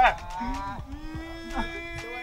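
A long, drawn-out cow-like moo, held at an even pitch for over a second after a short falling cry at the start.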